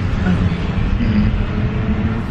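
Steady low rumble of road and engine noise inside the cabin of a moving car, with a faint steady hum.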